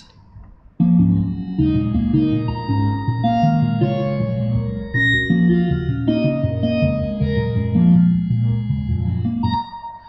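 Computer-generated sonification of the myrtle rust DNA sequence: layered synthesized notes, each mapped from the sequence's bases, pulsing in shifting patterns. It starts about a second in and stops just before the end.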